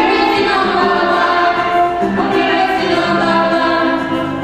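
A small mixed choir of men and women singing together, holding long notes.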